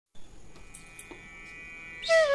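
Faint steady electrical hum with a few soft clicks.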